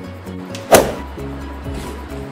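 Background music with a steady beat, cut by a single sudden loud hit about three-quarters of a second in.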